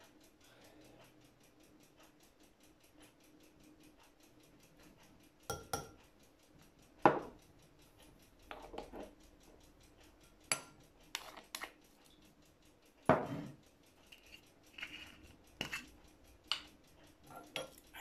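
A metal measuring spoon, a ceramic bowl and glass spice jars being handled: about a dozen short clinks and taps with a little scraping, starting about five seconds in.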